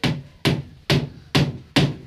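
Steady hammering on the wooden hull of a bangka being built: five even, sharp blows a little under half a second apart.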